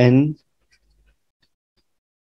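A man's voice says one short word, then near silence broken only by a few faint, light ticks of a stylus writing on a tablet screen.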